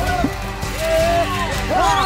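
Several voices shouting and whooping together in overlapping calls, each rising then falling in pitch. One call is held longer in the middle, and a fresh burst comes near the end, over a steady low rumble.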